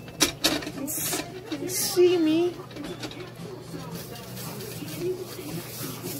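Spatula scraping and clicking against a frying pan as it is worked under a frying egg, a few sharp scrapes in the first two seconds. A brief hum or mumble of a voice comes at about two seconds.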